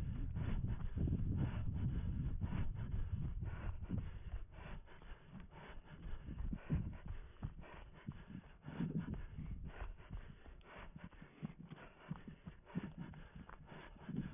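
A runner's footsteps on dry leaf litter, grass and twigs, an even stride of about three steps a second. A low rumble sits under them, heavy for the first few seconds and then fading.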